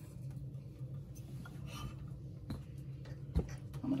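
Quiet handling of fabric pieces and wooden tools on a padded ironing board, over a steady low hum. One soft thump comes about three and a half seconds in.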